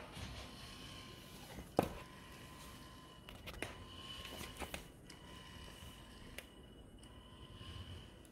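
Small geared DC wheel motors of a two-wheeled self-balancing robot giving a faint whine that swells and fades as they keep correcting its tilt. There is one sharp click about two seconds in and a few lighter clicks around the middle.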